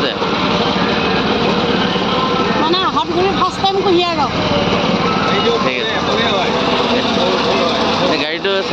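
Small air-cooled petrol engine driving a sugarcane juice crusher, running steadily, with voices over it near the middle.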